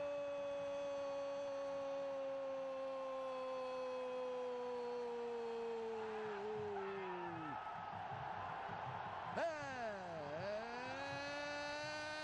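A Brazilian football commentator's long drawn-out "gol" cry, one held note that sinks slowly in pitch and trails off about seven and a half seconds in. A second held cry starts about two seconds later, dipping and then rising in pitch.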